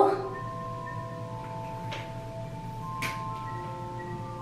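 Soft background music of long, overlapping bell-like notes held at several pitches.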